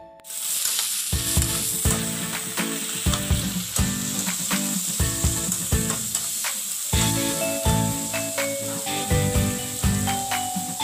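Whole shrimp sizzling as they fry in a hot pan, with a steady hiss that starts suddenly at the cut. A metal spatula stirs and turns them, adding short scraping clicks, over background music.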